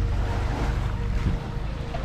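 Wind buffeting the microphone, a steady low rumble, over the wash of gentle surf at the shoreline.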